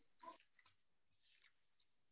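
Near silence on an online-class call, with a faint short mouth sound about a quarter second in and a faint breathy hiss about a second in.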